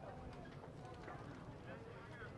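Faint voices murmuring in a large hall, with a few light knocks or clicks among them.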